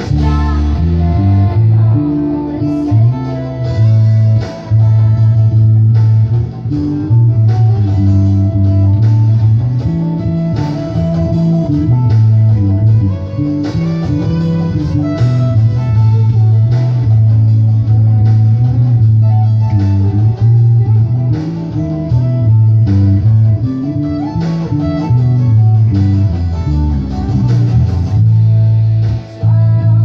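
Electric bass guitar playing a bass line along to a recorded song with drums; the bass notes are the strongest part of the mix and move in steps.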